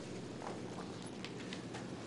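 Quiet room tone in a meeting chamber, with a few faint, scattered light knocks and clicks.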